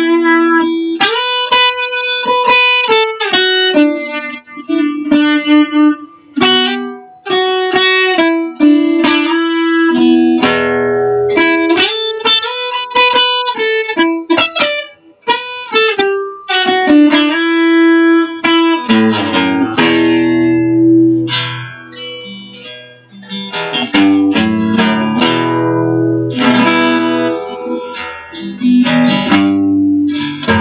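Acoustic guitar strumming chords with an electric guitar playing a melodic lead line over it, in an instrumental passage without singing. From about two-thirds of the way through, the playing becomes fuller and lower, with chords to the fore.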